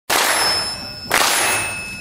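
Audience clapping along in unison: two loud claps about a second apart, each trailing off in the hall's echo.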